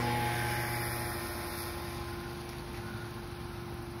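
Peugeot 207 CC's retractable hardtop mechanism running as the roof begins to close and the boot lid lifts: a steady electro-hydraulic pump hum with constant low tones, easing slightly in level over the first two seconds.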